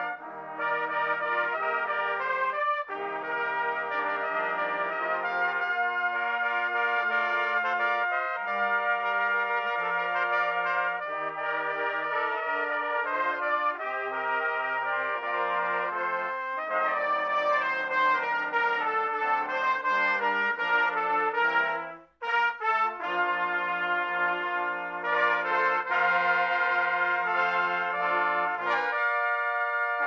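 A multitracked brass ensemble of trumpets, one player overdubbed on every part, playing sustained chords and moving lines together. The whole ensemble cuts off for a short rest about 22 seconds in, then comes back in.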